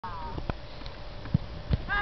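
A brief shout at the very start, then three short dull knocks spread across the two seconds, the sharpest about halfway through.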